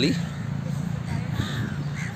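A crow cawing once, faintly, about a second and a half in, over a steady low background rumble.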